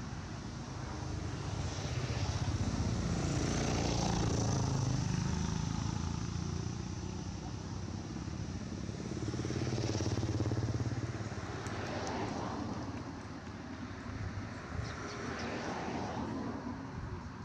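Low engine rumble of passing motor vehicles. It swells twice, once a few seconds in and again around the middle.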